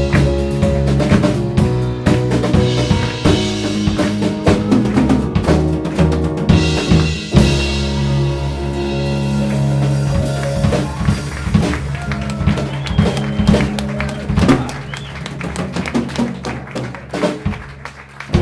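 A live band playing an instrumental passage: drum kit, bass and keyboard, with the drums busy throughout. A long held chord comes in about seven seconds in, and the music gets quieter over the last few seconds.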